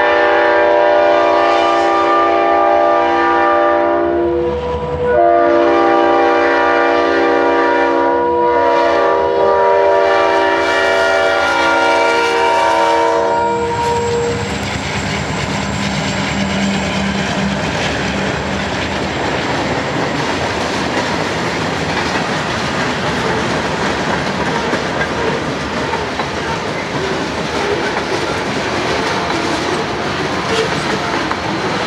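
Diesel freight locomotive HESR 701 sounding its multi-chime air horn in long blasts as it approaches the crossing, with short breaks about four and nine seconds in, the horn ending about 13 seconds in. Then the locomotive's engine passes, and loaded freight hoppers roll by with a steady clickety-clack of wheels on rail joints.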